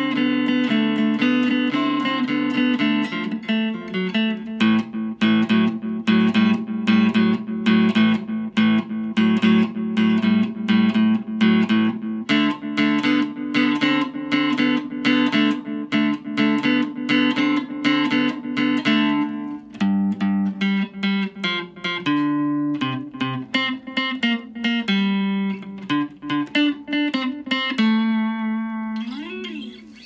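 Electric guitar played through a Boss Katana Mini practice amp with its delay on at mid (noon) time and level: a steady run of picked notes and chords. Near the end it settles on a held note that is bent up and back down.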